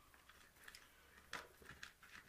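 Near silence with a few faint clicks of metal jigs being rummaged through in a plastic tackle box, the clearest about a second and a half in.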